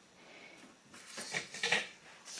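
Soft rustling of fabric and a cloth tape measure being handled on a counter: a few faint scuffs about a second in, after a near-quiet start.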